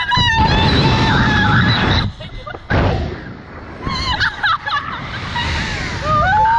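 Wind rushing over the microphone as riders are flung through the air on a slingshot ride, with two girls laughing and squealing over it. The wind noise drops out for a moment about two seconds in.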